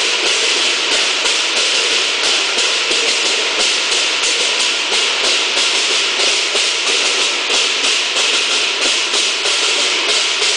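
Lion dance percussion: cymbals clashing in a steady, fast beat, the crashes ringing on into one another.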